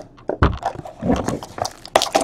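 Cellophane shrink-wrap being torn off a sealed trading-card box, heard as crinkling, crackling plastic in several uneven bursts.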